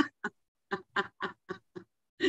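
A woman laughing in a run of short, breathy bursts, about four a second, heard through a video-call connection.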